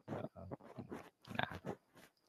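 A man's voice in a pause between phrases, faint and halting over a video-call connection: short mouth and breath sounds and a brief spoken "nah" about a second and a half in.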